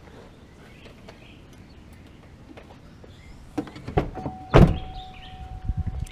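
A pickup truck door being shut: a few clicks, then one heavy thunk about four and a half seconds in, with a steady single-note tone for about a second and a half after it and a few light knocks near the end.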